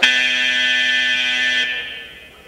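Wrestling scoreboard buzzer sounding once: a loud, steady buzz lasting about a second and a half, then cutting off, signalling the end of a period.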